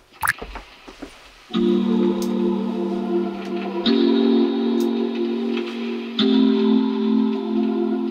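A song demo played back in a recording studio: held chords that come in suddenly about one and a half seconds in and change to a new chord roughly every two seconds.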